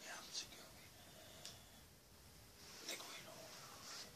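Only a man's faint whispered speech, with soft hissy consonants; no other sound stands out.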